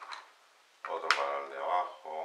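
Speech: a voice talking in Spanish in a short phrase about a second in, with a light click near the start.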